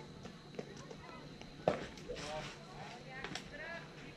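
One sharp smack from a pitched baseball's impact, a little before halfway, followed by voices calling out at the field.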